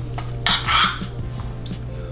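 Metal spoon scraping and clinking in a bowl of soft strawberry gelato, with one louder scrape about half a second in, over background music.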